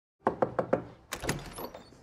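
Four quick knocks on a front door, then the door being opened about a second in.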